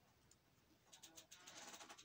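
Near silence at first. From about a second in come faint, quick clicks and rustles of jewelry chains being handled.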